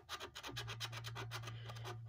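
A clear resin scratcher is rubbed back and forth over the latex coating of a lottery scratch-off ticket, scraping it off in rapid, even strokes.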